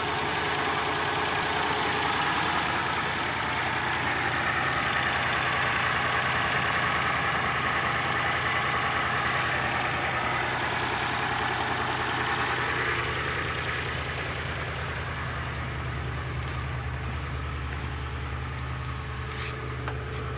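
Geo Metro XFI's 1.0-litre three-cylinder engine idling steadily, heard up close in the open engine bay. From about fourteen seconds in the higher hiss drops away and the low hum of the idle stands out more.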